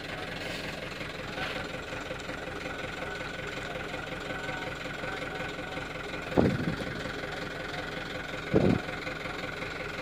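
Diesel truck engine idling steadily, with two short louder sounds about six and a half and eight and a half seconds in.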